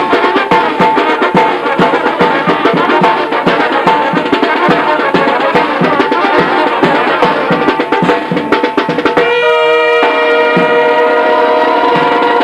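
Brass band music with drums: fast, busy percussion hits under horn lines, then a few seconds of held brass chords near the end.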